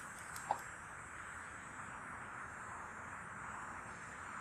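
Faint steady outdoor background hiss, with one brief short tone about half a second in.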